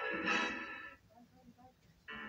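Film score music from the end credits, played through a television's speaker, dying away about a second in and leaving near silence.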